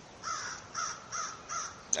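A crow cawing: four short caws in quick succession, about three a second.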